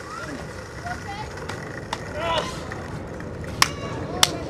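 Low, brief voices over steady outdoor background noise, with a couple of sharp clicks, the loudest one near the end.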